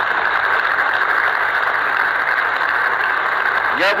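An audience applauding steadily in a hall after a line in a speech.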